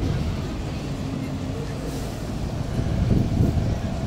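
City street traffic: buses' engines running in a queue of traffic, with faint voices of passers-by.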